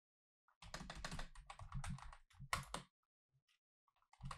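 Typing on a computer keyboard: a run of keystrokes starting about half a second in and stopping just before three seconds in.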